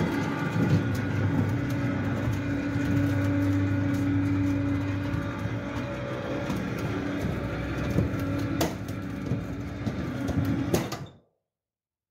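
Steel roll-up garage shutter winding on its spring-loaded drum: a steady metallic rattle of the slats over a low hum, with scattered clicks, stopping abruptly about a second before the end. It runs on a newly fitted pulley spring and works correctly.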